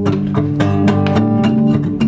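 Solo acoustic guitar strummed in a brisk, steady rhythm of several strokes a second over ringing chords, an instrumental gap between sung lines.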